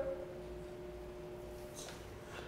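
Quiet pause holding a faint, steady hum made of two level tones, with no shot or impact.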